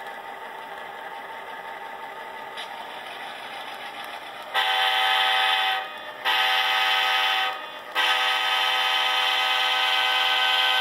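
Sound decoder in a model diesel locomotive playing a steady diesel idle through its small speaker, then three long horn blasts starting about four and a half seconds in. The last blast is still sounding at the end.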